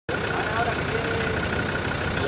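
A vehicle engine running steadily, with faint voices over it.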